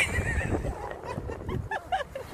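Staffordshire bull terrier whining as it tugs at a stick in its mouth: a wavering whine at the start, then a few short rising squeaks near the end.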